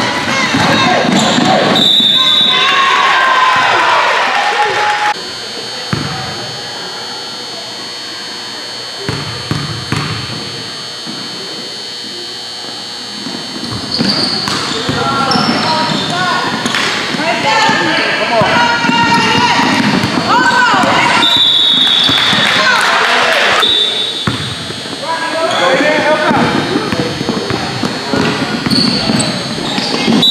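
Basketball bouncing on a hardwood gym floor during play, with players and spectators shouting in the echoing hall. It goes quieter for several seconds after about five seconds in, then the play and voices pick up again.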